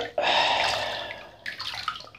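Bath water sloshing as a hand swishes through it: a sudden swish that dies away over about a second, then a few small splashes near the end.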